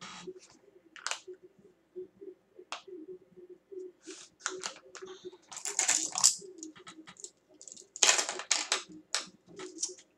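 Irregular clicks, taps and scraping rustles of makeup items being handled on a table, the longest scraping stretches about halfway through and again near the end.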